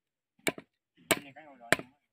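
Hammer blows on a wooden fence post where barbed wire is being fastened: three sharp strikes about 0.6 s apart. A person's voice is heard briefly between the second and third blows.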